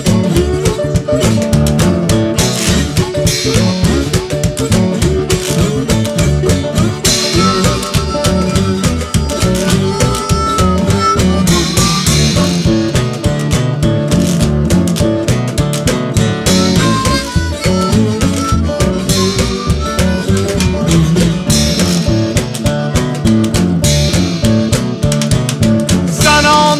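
Instrumental break in a band song: guitar lead over bass and a drum kit keeping a steady beat.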